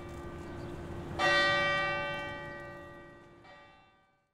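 Church bell tolling: a strike about a second in rings out and slowly dies away, with a fainter second strike near the end, over the hum of an earlier stroke.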